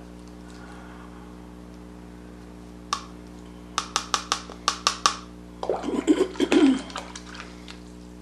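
Paintbrush working in a clear plastic mixing cup of watercolour paint. A single click, then a quick run of sharp clicks about halfway through over a steady low hum, followed by a cough that is the loudest sound.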